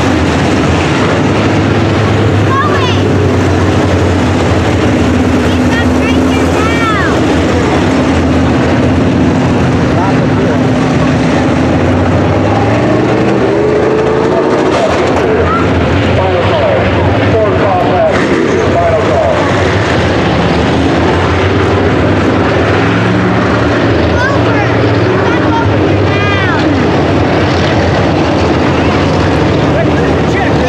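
A field of IMCA sport modified race cars with V8 engines running at racing speed on a dirt oval. The sound is steady and loud, and the engine pitch keeps rising and falling as the cars accelerate and go by.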